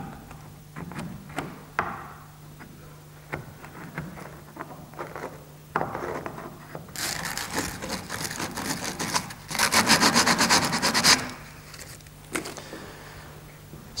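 Old glue being scraped and rubbed off the dowelled end of a maple chair part held in a clamp. The glue has gone brittle and crystallised with age. A few light handling knocks come first, then a run of fast scraping strokes from about six to eleven seconds in, which stop abruptly.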